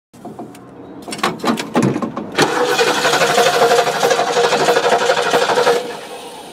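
A 1971 Ford Thunderbird V8 is cranked on the starter and does not catch: a loud, steady churning about two and a half seconds in, lasting a little over three seconds, then cutting off suddenly. The engine has a misfire and will not start. A few scattered knocks come before it.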